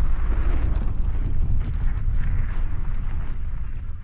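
Logo-intro sound effect: a deep, noisy rumble like a fiery blast, fading near the end.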